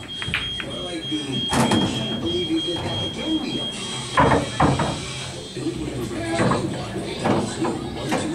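Indistinct talking in a pool hall, with several sharp clicks and knocks, including pool balls still rolling and colliding just after the break. A faint high steady tone stops a little before halfway.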